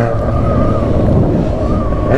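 Motorcycle engine running steadily at cruising speed, with wind buffeting the microphone.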